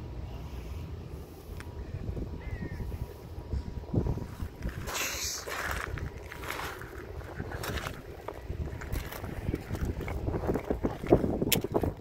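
Wind on the microphone, with irregular crunching of footsteps on wet beach pebbles from about four seconds in.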